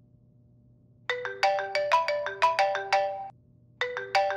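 Mobile phone ringtone playing a short melody of quick, sharply struck notes. It starts about a second in, stops briefly, then repeats near the end.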